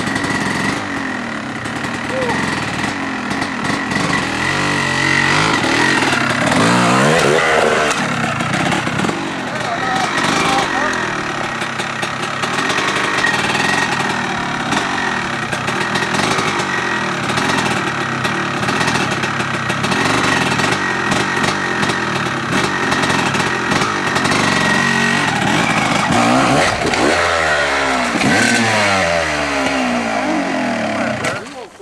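Dirt bike engines running and revving, with rising and falling sweeps of revs a few seconds in and again near the end as a bike accelerates at a fallen log and jumps it.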